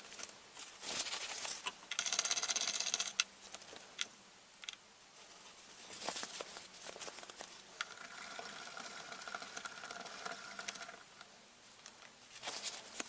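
Quiet handling of small glass paint pots and a paintbrush: sharp clicks and taps, with light, rapid scraping as the brush works paint out of the pots and dabs it onto paper.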